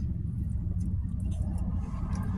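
A vehicle's engine idling, a steady low rumble heard inside the cabin, with faint chewing as a bite of donut is eaten.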